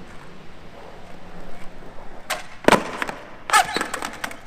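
Skateboard wheels rolling on smooth concrete, then a series of sharp clacks as the board is popped and slaps down, the loudest a little past halfway. A bail follows near the end, with the board clattering loose on the concrete.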